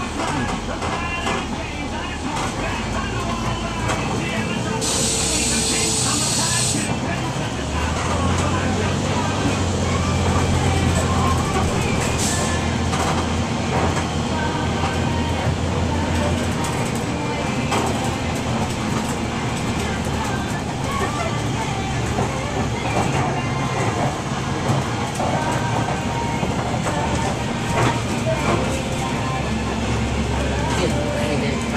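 Cabin sound of a 2003 IC RE rear-engine school bus running as it manoeuvres at low speed, its engine note swelling for a few seconds about eight seconds in. About five seconds in comes a hiss of air lasting about two seconds.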